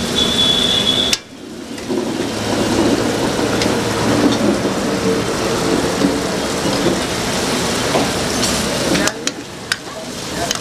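Gravy sizzling in a pan over a gas flame while a metal ladle stirs and scrapes through it, with occasional sharp taps of ladle on pan. The sound drops away suddenly about a second in and builds back up, and dips again near the end.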